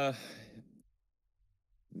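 A man's hesitant "uh" trailing off into a breathy sigh, then about a second of near silence before he starts speaking again near the end.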